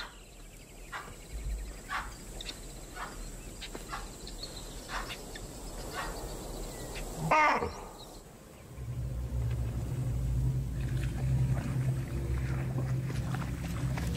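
Scattered short animal alarm calls over a faint high insect whine, the loudest a call with a bending pitch about seven seconds in. About nine seconds in, a low steady drone sets in and runs on.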